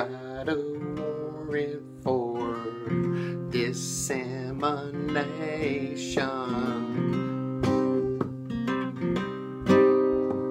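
Acoustic guitar strummed in a steady rhythm, with a man's voice singing over it from about two seconds in until about seven seconds in.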